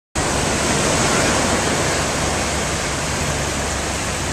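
Steady rush of small waves breaking in shallow surf on a sandy beach.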